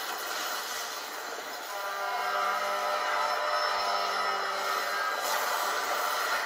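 Animation soundtrack playing through laptop speakers: a steady noisy rush that grows louder about two seconds in, with a held low tone running through the middle and fading out near the end.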